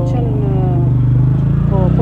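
A motor vehicle's engine idling close by, a steady low hum, under a voice that trails off in the first second.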